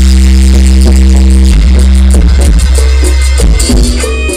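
Live band music, very loud, dominated by a long held low bass note with a sustained chord above it; the held chord breaks off shortly before the end as the band's rhythm returns.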